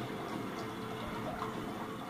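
Steady background noise with a faint low hum and no distinct events.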